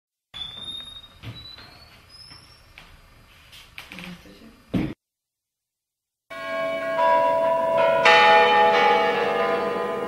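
Bells ringing: many long ringing tones layered on top of each other, building in loudness from about six seconds in. Before them come faint high rising chirps and a few clicks, then about a second of silence.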